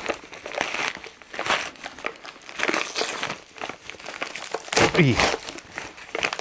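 Plastic postal mailer bag being cut with a small knife and pulled open, its taped plastic crinkling and rustling in repeated bursts. About five seconds in there is a short wordless voice sound that falls in pitch.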